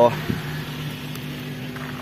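Suzuki APV's four-cylinder petrol engine idling steadily with an even hum.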